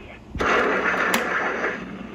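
A Gemmy Hannibal Lecter animatronic's speaker plays a loud hissing, sucking sound effect that starts suddenly about half a second in and fades over a second or so, with a sharp click near the middle. This is Hannibal's signature slurp that follows the Chianti line.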